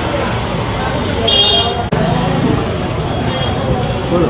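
Street traffic noise and people's voices, with a short high-pitched vehicle horn toot about a second and a half in.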